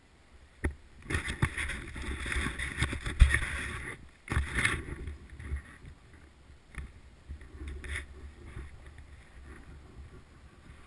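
Snowboard sliding and scraping over snow, loudest from about one to four seconds in with a second short burst soon after, then easing to a quieter, uneven hiss. A single sharp knock comes just before the scraping starts.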